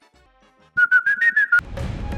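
A short whistled jingle of a few notes with sharp percussive clicks, starting about a second in. Near the end a low rumbling swell of music follows it.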